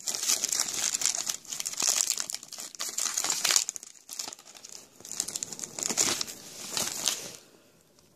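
Clear plastic toy bag crinkling and rustling in irregular bursts as hands work a small doll out of it; the crinkling stops shortly before the end.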